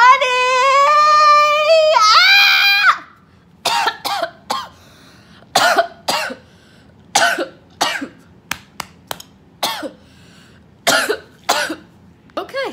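A woman crying theatrically: one long, high wail held for about three seconds, then a dozen or so short sobs spaced out over the rest of the time.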